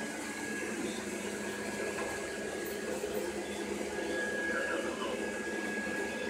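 A steady, quiet hum of a small motor or fan.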